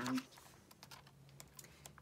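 Pages of a glossy album photobook being turned and handled by hand: a scatter of faint, small paper clicks and rustles.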